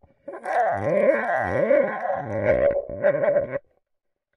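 Water gurgling and bubbling around an underwater camera's housing as it is lowered through an ice hole. The sound wavers and cuts off suddenly about three and a half seconds in.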